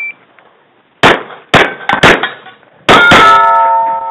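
Rapid gunshots in a timed shooting stage, about four quick shots in the first half, then a louder, longer blast about three seconds in. Steel plate targets ring after the hits, with a sustained metallic ringing near the end.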